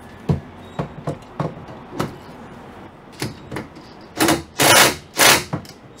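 The stabilizer jack under a small trailer-mounted tiny home being put down: a run of separate clicks and knocks about every half second, then three short, loud bursts of mechanical noise in the last two seconds.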